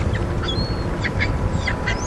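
Birds calling: a quick run of short, quack-like calls about halfway through, with a few brief high chirps, over a steady low rumble.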